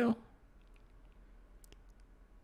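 A few faint clicks and taps from a smartphone being handled and tapped, against a quiet room.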